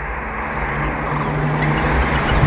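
Rushing whoosh sound effect of an animated logo transition, a dense noise with a low rumble that swells steadily louder, with faint musical tones creeping in near the end.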